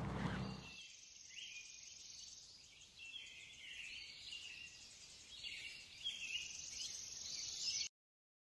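Faint outdoor ambience of intermittent high-pitched chirping calls, with only the high range left, cutting off abruptly just before the end.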